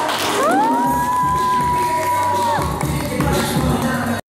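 A group cheering and whooping, with one long 'woo' that rises, holds for about two seconds and drops away.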